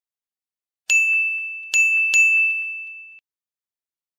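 Logo sting sound effect: three bright chime dings on the same pitch, the last two close together, each ringing on and fading, cut off suddenly about three seconds in.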